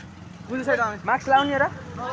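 A voice speaking two short phrases, about half a second and a second in, over steady street traffic noise.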